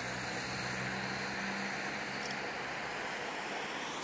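Steady road traffic noise: the even hiss of tyres on a wet road, with a low engine hum that fades out a little past halfway.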